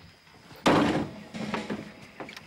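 The metal door of an open-top utility vehicle slammed shut with one loud thunk about half a second in, followed by a few fainter knocks.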